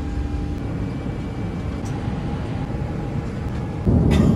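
Steady cabin noise of an Airbus A350 airliner in flight: an even low rumble of airflow and engines, with a faint steady hum over it and a small click about two seconds in.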